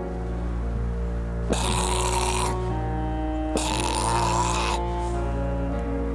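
Two long breathy snorts from the dinosaur model looming over him, each about a second long, about a second and a half in and again near four seconds in. Low sustained music chords run under them.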